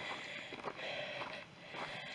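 Faint footsteps on a dry, stony dirt track, a soft crunch every half second or so.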